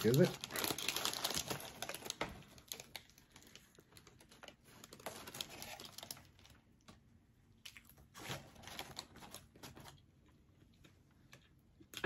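Paper food wrapper crinkling as it is handled, loudest and busiest in the first two seconds, then in a few softer bursts.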